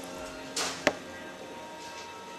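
Prepared string quartet holding soft, sustained tones, with an airy rushing swell about half a second in and one sharp click just before the one-second mark.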